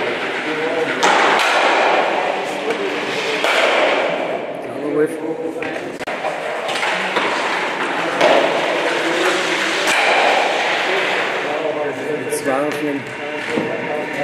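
Stocks thrown down the court, sliding with a rushing hiss in several stretches, and sharp knocks, once a few seconds in and again near the end, as stock strikes stock. People talk in the hall underneath.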